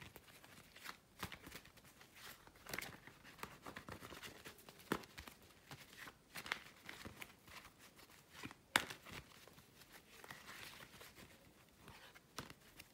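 Faint, irregular rustling and soft clicks of a tarot deck being shuffled and handled by hand, with a sharper card snap about nine seconds in.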